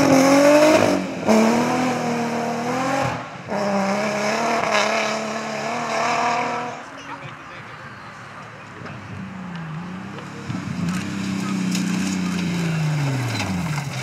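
Nissan 350Z rally car's 3.5-litre V6 engine revving hard on a gravel stage, its pitch climbing and dropping through gear changes and lifts. The sound breaks off abruptly a few times. After a quieter stretch midway, the engine note swells again, rising and then falling as the car comes through.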